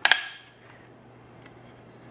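A single sharp metallic clack about a tenth of a second in, with a brief ring from the homemade aluminium launcher as the hand handles it at the bolt. After that only a faint steady hum remains.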